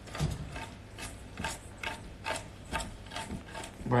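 Wire whisk scraping and clinking against a stainless steel bowl as it stirs a dry, crumbly mix of almond flour, flour, brown sugar and butter, in repeated short strokes about two or three a second.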